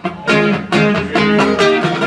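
Acoustic guitar strummed in a steady rhythm, chords ringing between quick strokes.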